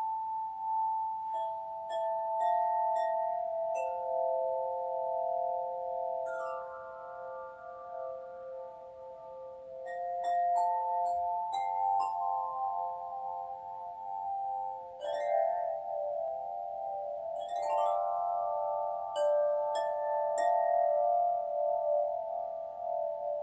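Tuned chime bars struck with a mallet: single notes and quick runs of several notes, each ringing on for several seconds so the tones overlap into a sustained chord.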